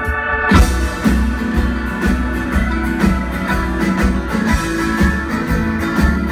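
A live folk-rock band plays an instrumental passage on acoustic guitar, banjo, keyboard, cello and drums. The sound opens on held notes, and about half a second in the full band comes in on a strong hit, then carries on with a steady drum beat.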